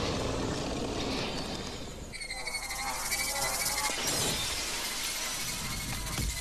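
Film sound effects: a loud, dense crash of shattering glass and falling debris. From about two seconds in, a high wavering tone rises over it.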